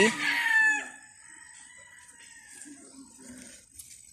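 A rooster crowing, its call ending about a second in, followed by quiet.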